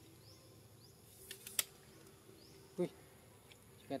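Faint outdoor ambience: short, high falling chirps repeat about every half second. A few sharp clicks come a little over a second in, and one brief low call sounds about three seconds in.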